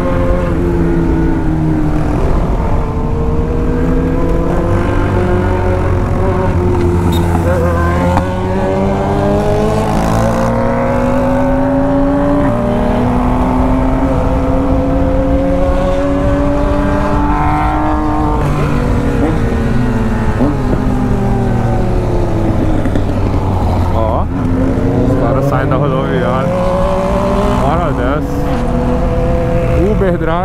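A BMW R1200 GS Adventure's boxer twin engine under way on the road. Its revs climb slowly under throttle, fall away about two-thirds of the way through as the throttle closes, then climb again near the end. Wind and road noise sit under the engine.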